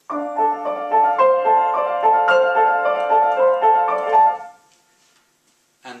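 Upright piano playing a quick, busy figure of repeated notes. It stops about four and a half seconds in.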